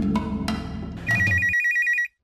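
Background music fades, then about a second in a telephone-ring sound effect starts: a rapid, trilling electronic ring of about ten pulses a second. It cuts off abruptly and signals an incoming phone call.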